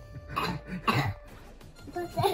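Two short, throaty vocal bursts from a person, about half a second apart in the first second, then quieter, with background music underneath.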